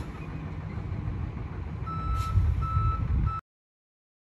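Semi truck backing up: the diesel engine runs low and steady while a reversing alarm starts beeping about two seconds in, with three beeps on one high tone. The sound cuts off suddenly near the end.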